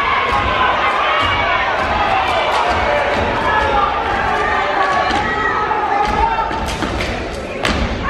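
Step team stepping: feet stomping on a stage floor, with claps and body slaps in a rapid rhythm, under shouting voices. The strongest hit comes near the end.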